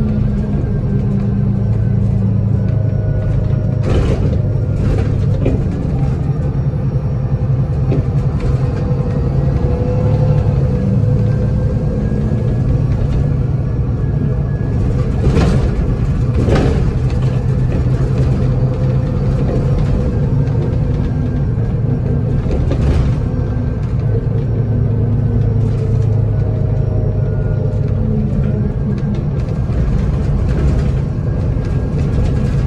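Volvo 7700 city bus's Volvo D7C diesel engine running under way, heard from inside the passenger cabin, its pitch rising and falling several times as the bus accelerates and shifts. A few sharp knocks and rattles from the bus body stand out, around four seconds in and twice in the middle.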